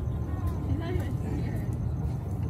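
Faint voices of people talking at a distance over a steady low rumble.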